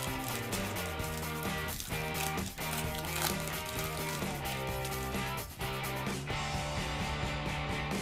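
Background music with sustained held notes and a few light accents.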